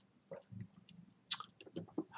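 Faint mouth sounds of a man sipping and swallowing from a mug: small wet clicks and gulps, with one short hiss a little past halfway.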